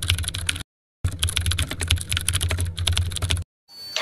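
Keyboard-typing sound effect: rapid key clicks over a low hum, in a short run, then a brief gap, then a longer run that stops shortly before the end.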